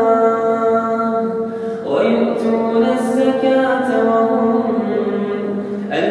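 A solo voice recites the Quran in melodic tajweed chant, holding long steady notes. There is a short break and a new phrase starts about two seconds in.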